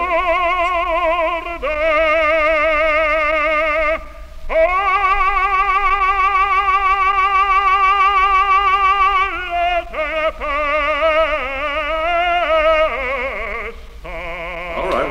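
Historic recording of an operatic baritone singing a phrase of sustained notes with wide vibrato. The longest note is held for about five seconds in the middle, followed by a run of shorter notes.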